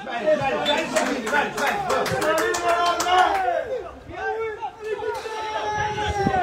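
Several voices shouting and calling over one another, loudest in the first few seconds, with a run of sharp clicks among them.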